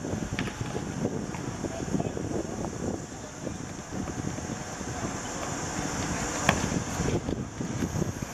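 Camcorder field sound from a football game on a hard court: wind buffeting the microphone over a steady high hiss, with players' shouts, and a sharp knock about six and a half seconds in as the ball is kicked.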